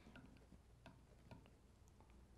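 Near silence broken by a handful of faint, irregular ticks of small metal fly-tying tools touching the hook and vise.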